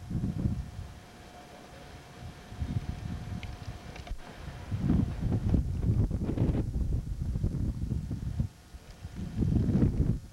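Wind buffeting the microphone in irregular gusts, a low rumble that dies down briefly about a second in and again near the end.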